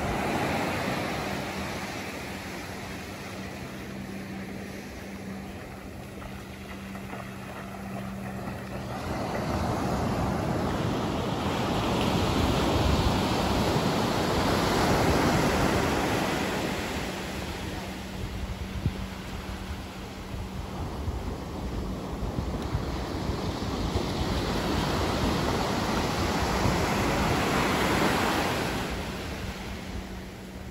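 Ocean surf breaking and washing up the beach, a steady rush of water that swells to its loudest twice, around the middle and again near the end.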